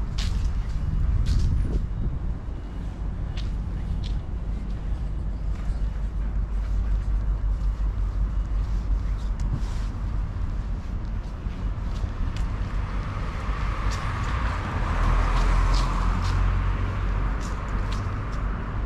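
City street traffic noise with a constant low rumble. A passing vehicle swells and fades about three-quarters of the way through, and a few scattered clicks sound now and then.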